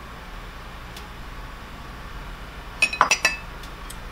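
Glassware clinking: a few sharp glass-on-glass knocks in quick succession about three seconds in, with a faint click earlier, as a small glass cup and a glass mixing bowl are handled.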